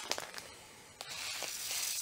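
Plastic bag of flax seed crinkling faintly in the hands, then from about a second in a steady hiss of the small seeds pouring out of the bag into a container.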